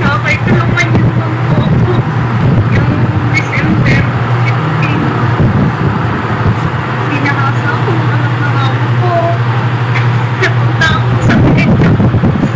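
A steady low hum under a continuous noisy background, with faint, indistinct voices, as picked up by a phone's microphone.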